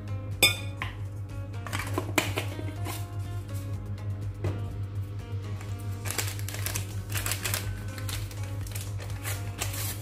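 Background music, with a metal spoon clinking against a glass mixing bowl a few times, the sharpest clink about half a second in.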